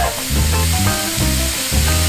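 Ground ribeye and onions sizzling in a hot oiled cast-iron skillet as raw meat is crumbled into it by hand. Background music with a low bass pulsing about twice a second runs underneath.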